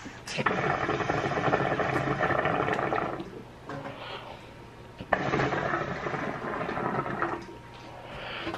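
Hookah water bubbling in two long draws through the hose, each lasting about two and a half seconds, with a short pause between them.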